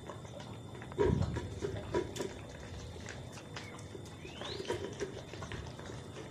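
Beagle puppies eating dry kibble from plastic bowls on a tile floor: irregular clicks and crunches of chewing and bowls knocking on the tiles, with a louder knock about a second in and a short rising squeak near the middle.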